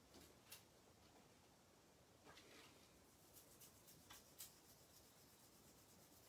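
Near silence with faint paper rustles and a few light scratchy rubs, about half a second, two seconds and four seconds in, as hands handle and smooth a parchment piece and foil sheet on the machine's plate.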